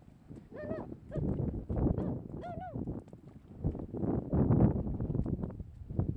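Footsteps squelching and splashing through wet mud and shallow water on a tidal flat, in irregular short knocks. Two short pitched calls, each rising then falling, come less than a second in and again about two and a half seconds in.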